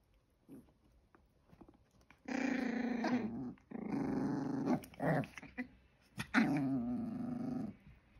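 Chihuahua puppy growling in three long stretches, with short sharp sounds in between, while scuffling with its littermate over a treat.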